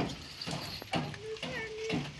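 A few sharp knocks from hand construction work, then a person's voice holding one long steady note in the second half.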